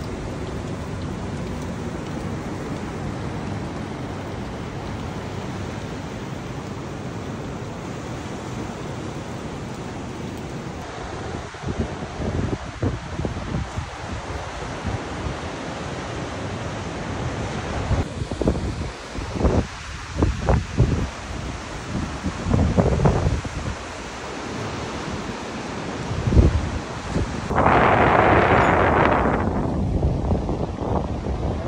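Ocean surf making a steady wash of noise, with gusts of wind buffeting the microphone from about ten seconds in, and a louder rush of noise near the end.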